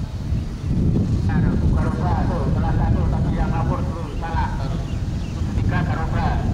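Wind buffeting the microphone as a steady low rumble, with people's voices in the background from about a second in and again near the end.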